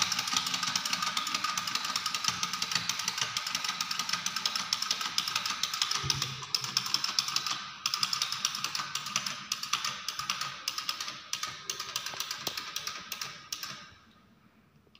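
Battery-operated walking toy chick running, its mechanism clicking rapidly and steadily while it plays a tinny electronic tune; the sound cuts off suddenly near the end.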